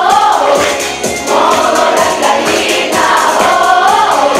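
A children's choir singing with musical accompaniment, in long held phrases.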